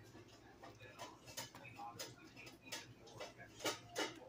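Faint, irregular clicks and knocks as a hoverboard's wheels roll over a floor threshold bump, the loudest knock near the end.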